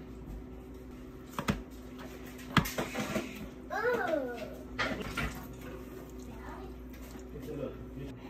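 Sharp clicks and a short scrape of plastic serving utensils against plates while food is dished out, the loudest click about two and a half seconds in. A baby makes a short babbling call about four seconds in.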